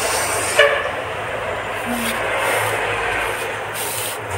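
A steady rushing background noise with a low hum running under it.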